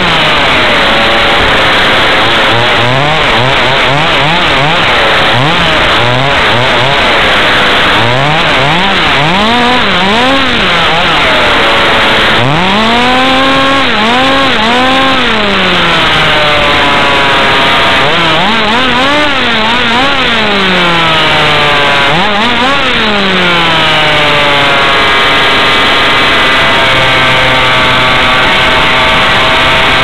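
HPI Baja 5B 1/5-scale RC buggy's two-stroke petrol engine, heard close from a camera mounted on the car, revving up and down over and over with the throttle as it races. Near the end the pitch drops and holds steady as it settles to idle.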